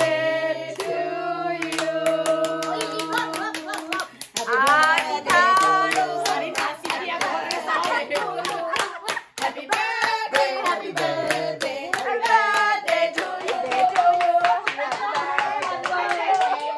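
A small group of people singing a birthday song together with steady clapping in time. The voices hold notes over the regular beat of the hand claps.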